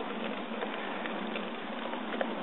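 Cardboard boxes burning in open flame: a steady hiss with scattered small crackles.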